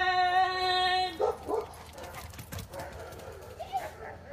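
A long call of the dog's name, "Wilson", drawn out on one steady pitch as a recall, ending about a second in. Then come short scattered dog barks and a brief whine near the end.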